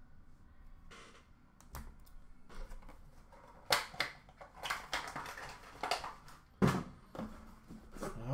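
Handling noise: a clear plastic card holder and cardboard being moved about by hand as the next box is reached for in a shipping case, giving scattered clicks, knocks and rustles, the two sharpest knocks about four and six and a half seconds in.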